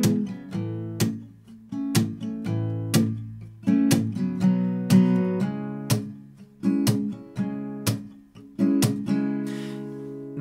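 Steel-string acoustic guitar, capoed at the fourth fret, strummed in a driving rolling-train rhythm. It cycles through C, F, G and A minor chord shapes, sounding in E major, with sharp accented strokes about once a second and lighter strokes between them.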